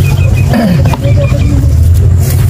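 A loud, steady low engine hum, with a faint voice briefly over it.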